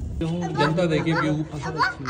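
People's voices talking. A low car-cabin rumble cuts off abruptly just after the start.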